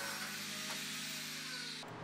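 Angle grinder with a cut-off disc cutting through square steel tubing: a steady motor whine over a grinding hiss, breaking off abruptly just before the end.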